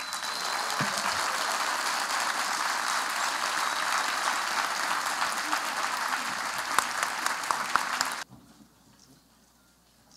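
Large auditorium audience applauding steadily, cut off abruptly about eight seconds in.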